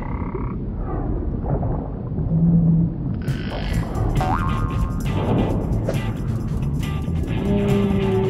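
Frog croaking, a cartoon sound effect, with a dense low rumble underneath.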